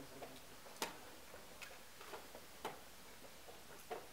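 Wooden chess pieces set down on the board and chess clock buttons pressed in a fast blitz game: about five sharp separate clicks and knocks, the sharpest about a second in.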